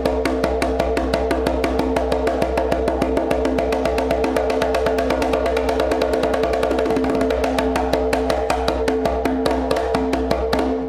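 Fast, even run of open slaps on a conga, struck with the fingertips, over a steady backing music track with held tones and a low bass.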